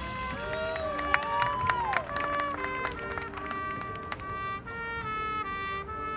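Marching band brass with a front ensemble playing a sustained passage: sliding tones rise and fall in arcs in the first two seconds, then held chords that move in steps.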